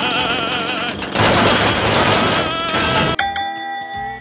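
Cartoon jackhammer clattering while a man yells, his voice shaking with the hammer. About three seconds in it cuts off abruptly and a steady ringing tone follows.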